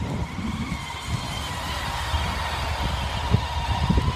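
Honda ST touring motorcycle's V4 engine running at low revs as the bike rolls slowly up close.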